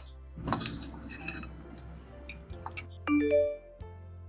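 Cutlery and dishes clinking at a meal over soft background music. Near the end comes a phone's short alert of ringing notes stepping up in pitch: incoming messages.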